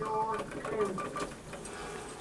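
Kone EcoDisc lift car just after its floor button is pressed: a short tone lasting about half a second, then a few faint, quick repeated beeps and a low, steady mechanical hum.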